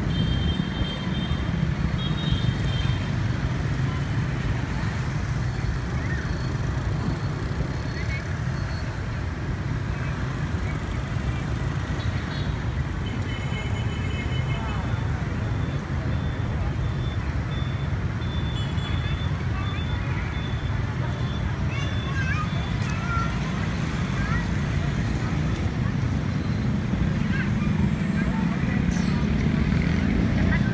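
Steady low rumble of road and wind noise from riding through town traffic, with scooters passing, and a few brief high tones near the start and in the middle.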